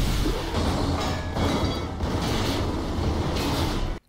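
Animated action-scene soundtrack: music mixed with the heavy mechanical noise of a mecha tank, cutting off suddenly at the end.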